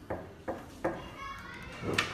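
Three knuckle knocks on a wooden door, evenly spaced in the first second, followed near the end by a louder thump.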